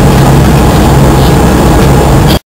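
Loud, steady drone of an airliner's engines heard inside the passenger cabin, with a low hum under the noise.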